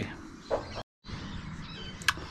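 Quiet outdoor background with a few faint bird chirps near the end, broken a little before halfway by a short moment of dead silence where the audio cuts.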